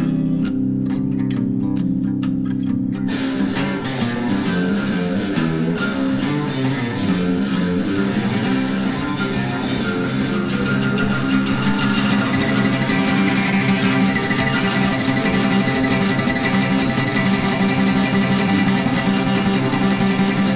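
Electric bass and guitar playing an instrumental passage together, with held low notes at first; about three seconds in the playing turns fuller and busier, and it builds a little louder and brighter from about twelve seconds in.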